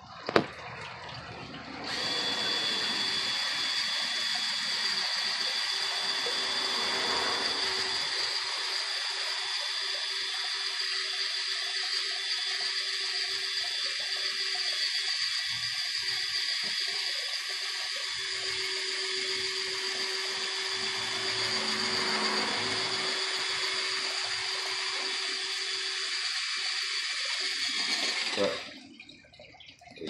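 Cordless drill driving a screw into a wooden post, running without a break at a steady pitch with a high whine. It starts about two seconds in after a short click and stops shortly before the end.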